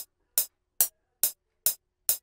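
FL Studio's built-in metronome clicking at 140 BPM: short, sharp ticks evenly spaced, about two and a third a second, five in all.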